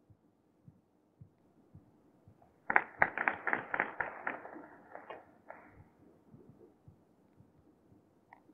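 A quick run of about a dozen sharp clicks or claps, starting nearly three seconds in, loudest at first and tailing off over about three seconds.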